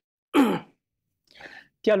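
A person's short breathy sigh, falling in pitch, followed by a faint intake of breath; speech starts again near the end.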